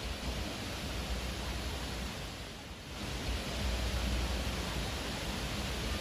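Wind blowing through leafy trees, a steady rustling hiss that eases briefly about halfway through, then picks up again.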